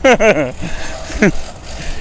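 A few words of speech at the start and a short falling vocal sound about a second in, over steady outdoor background noise with a low rumble.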